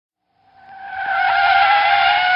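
Electric dual-action car polisher running at speed: a steady, high-pitched motor whine that swells in about half a second in and holds.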